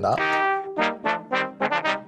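Three layered recordings of a trombone played back together: one held note, then a run of short, detached notes. Summed together the three tracks are too loud for a single output, peaking into the red.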